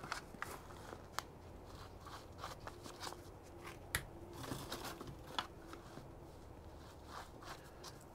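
Faint rustle of loose compost with scattered light clicks and taps as small plastic plant pots are handled and filled by gloved hands.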